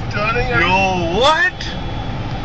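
A man's voice, drawn out and rising and falling in pitch for about a second and a half, over the steady low rumble of road and engine noise heard inside a moving car.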